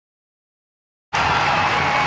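Dead silence for about the first second, then ice hockey arena crowd noise cuts in suddenly and carries on steadily, with a faint steady tone in it.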